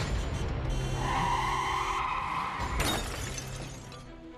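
Film sound effect of a car collision: tyres screech for a couple of seconds, then a sudden crash with breaking glass about three seconds in, fading away, over dramatic background music.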